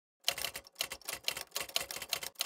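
A rapid series of sharp, clattering clicks like keystrokes, starting a moment in and coming in quick clusters with short breaks between them.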